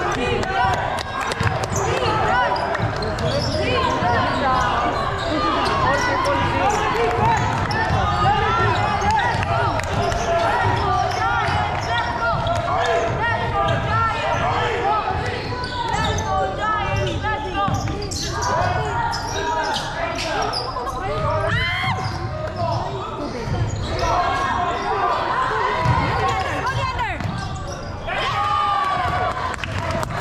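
Basketball bouncing on a hardwood gym floor during play, with many overlapping voices of players and onlookers calling out throughout.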